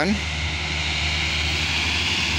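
A steady low drone with an even hiss over it, holding at one level without clear beats or changes.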